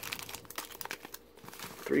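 Foil trading-card booster packs and torn blister-pack packaging crinkling as they are handled: a run of small crackles, dense for about a second and then thinning out.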